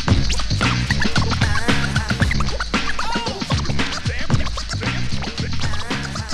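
DJ scratching on a vinyl record over a steady drum-and-bass beat: the record is pushed back and forth under the needle in quick swooping pitch glides.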